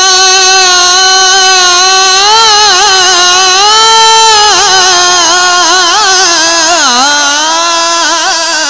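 A man singing a naat solo into a microphone, on a long held vowel without words: a steady note for about two seconds, then quick wavering ornaments, another held note, and a further run of ornaments with a dip in pitch near the end before it steadies again.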